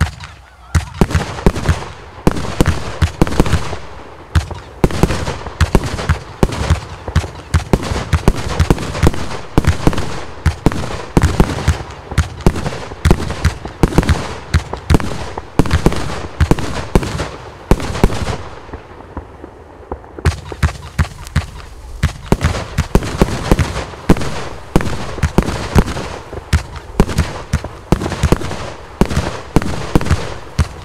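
Vivid Pyrotechnics Ziegelstein, a 120-shot 30 mm compound firework cake, firing a rapid volley of shots and bursts, several a second. The firing eases briefly about eighteen seconds in, then picks up again.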